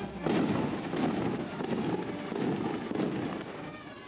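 Firecrackers going off in a rapid, dense crackle that starts suddenly a fraction of a second in and runs for about three seconds, loud enough to drown out the band music.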